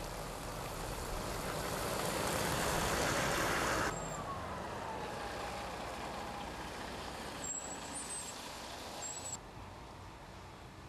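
Heavy trucks driving along a snowy road, their engine and tyre noise building to a peak and then cutting off abruptly. A quieter stretch follows in which a truck pulls away with a falling whine.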